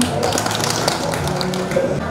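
Indistinct voices in a room, with a quick run of light clicks and taps through most of the stretch.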